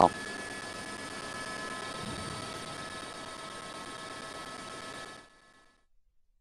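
Faint steady hum and whine of a news helicopter's cabin, several steady tones over a noisy hush, heard between the commentator's words; it cuts off suddenly about five seconds in.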